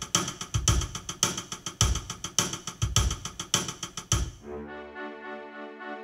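The Kurzweil CUP2 digital piano's built-in rhythm style playing a steady drum-kit pattern, its tempo set to about 116. The drums stop about four and a half seconds in, and sustained piano chords from the same instrument take over.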